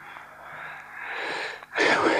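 A person's audible breaths: a long, soft breath, then a louder, shorter one near the end.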